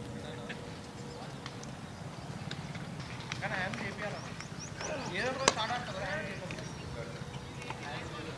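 A leather cricket ball struck once by the bat: a single sharp crack about five and a half seconds in, the loudest sound here. Players shout around the shot, and there are a few faint knocks earlier.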